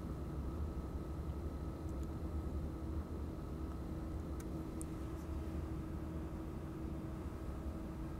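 Steady low room hum with a faint constant tone, typical of a room with electronic equipment running. A few faint short clicks come about four and a half to five seconds in.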